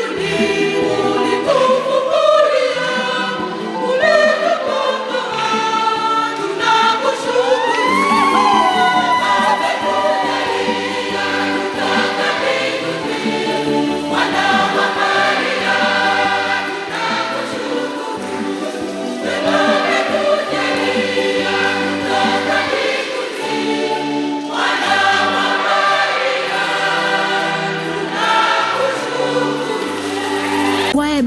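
Children's choir singing a Swahili Catholic hymn with instrumental accompaniment.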